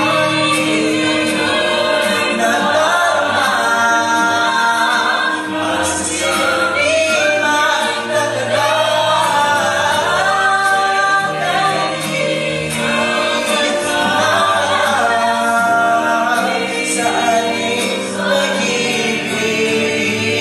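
Mixed vocal ensemble of women and men singing a Tagalog ballad in harmony, several voices moving together over sustained lower notes.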